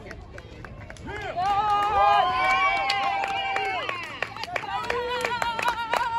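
Girls' and women's voices shouting in long, high, drawn-out cheers that overlap. From about four and a half seconds in, hand clapping follows, with one voice still holding a call.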